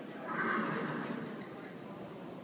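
A horse whinnies once, a call lasting about a second.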